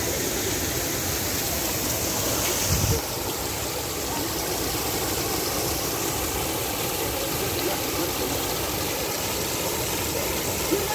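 Steady rush and splash of fountain jets arching over a walkway and falling onto the paving and lake water. The sound changes abruptly about three seconds in.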